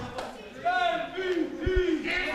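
A single raised voice shouting out in a drawn-out call, from about half a second in, with a short low thud near the end.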